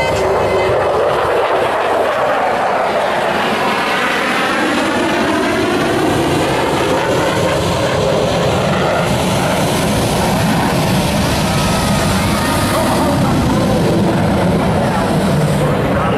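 Su-30MKM's AL-31FP turbofan engines running up on the ground during engine start: a loud, steady jet roar with a rising whine a few seconds in as a turbine spools up.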